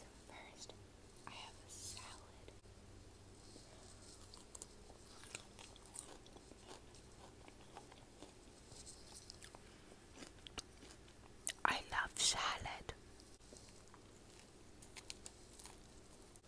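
Close-miked mouth sounds of someone chewing and biting food, with small wet clicks and smacks throughout and a louder cluster of sharp crackly noises about twelve seconds in.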